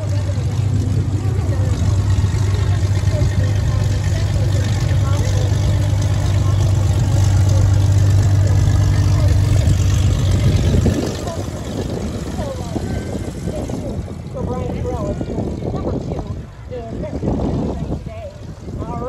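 Red aerobatic biplane's piston engine and propeller running at taxi power. It makes a loud, steady low drone that grows as the plane passes close and drops away suddenly about eleven seconds in. People's voices follow.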